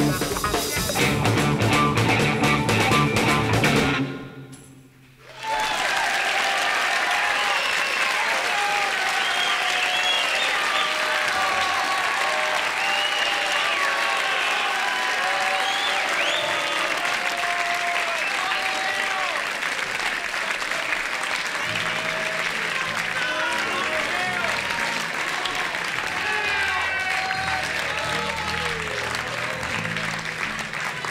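A live rock band (electric guitar, bass, piano and drums) plays the last seconds of a song and stops about four seconds in. An audience then applauds and cheers steadily, and low instrument notes sound under the applause near the end.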